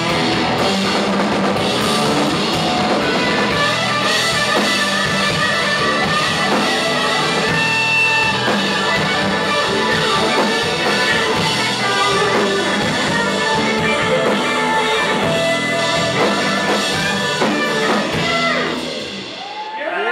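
Live rock band playing, with electric guitars and a drum kit. The playing drops away in the last second or so as the song finishes.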